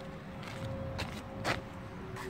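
Quiet outdoor background with a faint steady hum and two brief clicks, about a second and a second and a half in.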